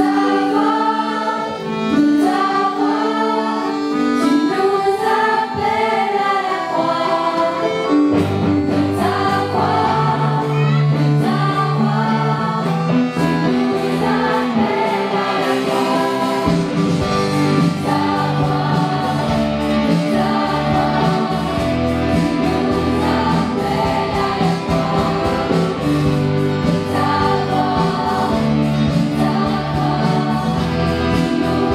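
A choir singing in harmony with a live band. The accompaniment fills out about eight seconds in, and a deeper bass joins about halfway through.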